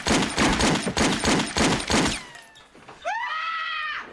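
Rapid gunfire from a film's shootout, about three shots a second for the first two seconds, each shot trailing a little ringing. After a short lull, a loud high-pitched held sound rises and then holds steady through the last second.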